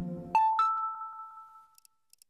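Electronic menu music cuts off about a third of a second in, and a two-note electronic chime, the Nintendo Wii HOME Menu opening sound, rings and fades away.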